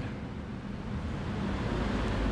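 Steady low background rumble with no speech, swelling slightly near the end.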